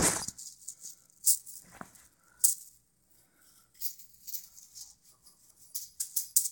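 Juggling balls rattling and clicking as they are handled: a sharp rattle right at the start, then scattered short rattles and clicks as the balls are gathered up between attempts.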